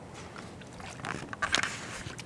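Low steady rush of wind and water at a river's edge, with a few short, sharp noises in the second half.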